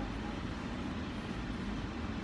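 Steady low rumble inside a car's cabin with the engine running.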